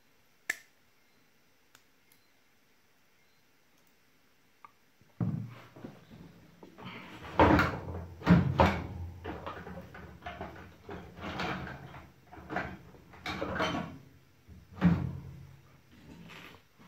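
Handling noise at a workbench: a single sharp click, then from about five seconds in a run of irregular knocks and clatter, loudest around eight seconds in and again near the end, as battery cells and gear are moved about on a rubber repair mat.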